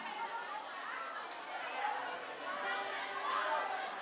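Crowd chatter from a bar audience: many voices talking at once, with no music playing.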